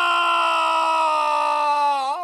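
One long held cry on a single note, its pitch sinking slowly.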